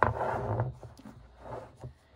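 Strand of T-shirt yarn being drawn through crocheted stitches: a rough fabric-on-fabric rubbing rustle, loudest in the first half second, then softer handling rustles.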